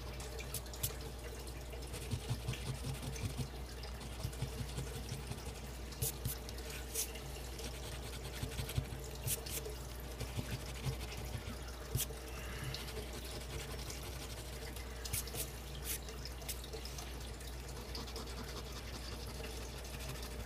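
A coin scratching the coating off a scratch-off lottery ticket: short scrapes in irregular spurts, over a steady low hum.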